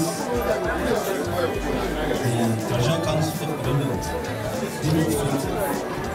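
A man speaking into a hand-held microphone, with music playing in the background and chatter around him.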